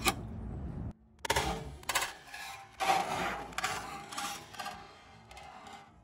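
Plastic toy playset pieces being handled, a run of sharp clicks and clatters, with the sound cutting out briefly about a second in.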